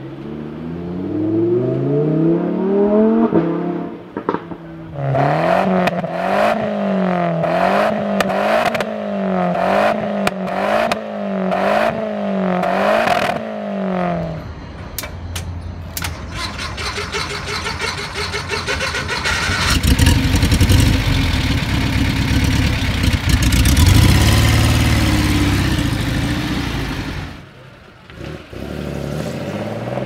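A sequence of sports-car engine sounds. A Lamborghini Huracán's V10 accelerates with a rising note, followed by an engine revved up and down about once a second for ten seconds. Then comes the air-cooled flat-six of a classic Porsche 911, recorded close to its tailpipe, running rough and loud and revved harder in its second half, and near the end another Porsche 911 pulls away with a rising note.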